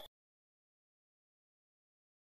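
Dead silence: the sound track is blank, with the sound before it cutting off right at the start.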